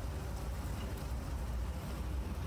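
Low, steady rumble with a faint hiss: ambient outdoor background noise, with no distinct event.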